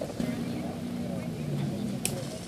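Indistinct chatter of a gathered group of cyclists over the steady hum of a car engine, which drops slightly in pitch near the end.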